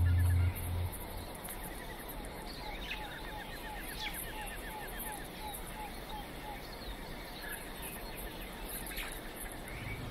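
Outdoor ambience of birds calling: a run of short repeated chirps, about three a second, over a steady hiss, thinning out after the middle. A low chanted drone cuts off about half a second in.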